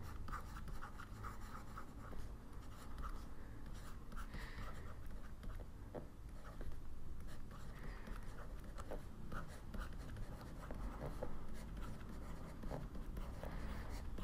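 Faint scratching of a stylus writing, in many short strokes.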